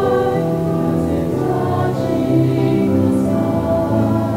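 A small mixed choir of young men and women singing in parts, holding long notes that change pitch about every second.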